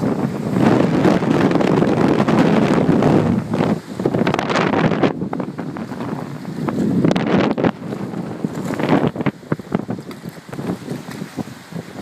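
Strong straight-line wind, about fifty miles an hour, buffeting the microphone in heavy gusts. It is loudest and most continuous over the first few seconds, then comes in choppier, fitful blasts.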